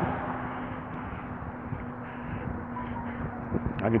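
Road traffic noise: an even rush from cars on the roadway, with a faint steady hum underneath.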